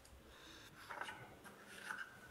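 Faint rustling and scratching, with a few soft clicks about a second in and near the end.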